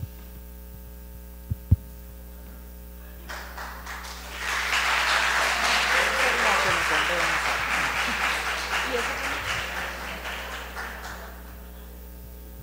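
Audience applauding, swelling up a few seconds in and fading out near the end, after two sharp knocks about a second and a half in.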